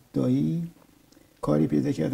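Speech only: a man talking, with a short phrase, a pause of under a second, then talk resuming near the end.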